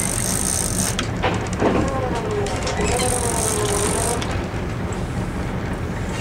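Sport-fishing boat's engine running with a steady low drone, while the big-game reel's drag gives a high whine twice, in the first second and again around the middle, as a hooked blue marlin takes line.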